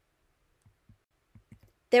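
Near silence broken by a few faint, soft clicks in the second half, then a voice starts speaking right at the end.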